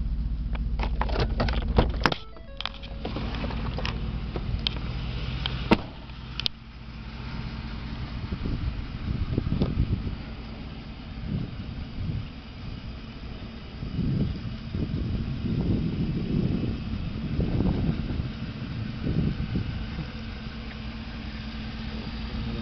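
Ford F-150 pickup's engine idling with a steady low hum. A run of sharp clicks and knocks comes in the first few seconds, and irregular low rumbles follow in the second half.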